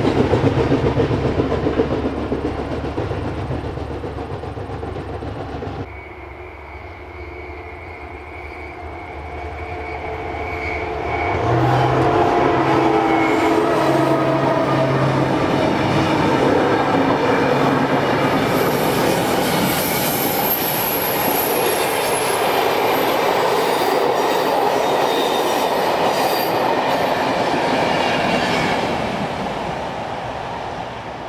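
A rail vehicle passes and fades over the first few seconds. Then a passenger train approaches and its coaches roll past close by for most of the rest, with steady wheel and track noise and a clickety-clack of the wheels over the rails, fading near the end.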